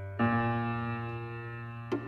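Music on a keyboard instrument: a new chord sounds about a quarter second in and is held, fading slowly, with a sharp click near the end.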